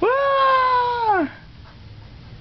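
A baby's single drawn-out high-pitched squeal, about a second long, rising sharply at the onset and dropping at the end.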